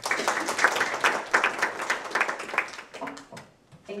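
Audience applauding, many hands clapping together, then dying away about three seconds in.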